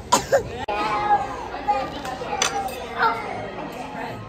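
Young children's voices and indistinct speech, with a few short high exclamations.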